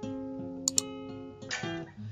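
Steel-string acoustic guitar: a chord is struck and left ringing, then new notes are played about a second and a half in. Two short, sharp clicks come about two-thirds of a second in.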